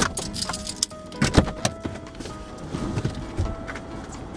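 Background music with held notes, over clicks and thumps of a person getting out of a car's driver's seat. The loudest thump comes about a second and a half in.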